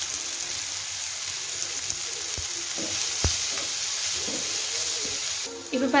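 Chopped onions, tomatoes and green chillies sizzling in oil in a non-stick pan as they are stirred, a steady hiss with two knocks about halfway through. The sizzling drops away shortly before the end as a voice comes in.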